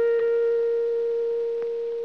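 A bell-like chime note, struck sharply and left ringing, fading slowly as a single sustained pitch; it closes a short run of struck notes. A faint click sounds about one and a half seconds in.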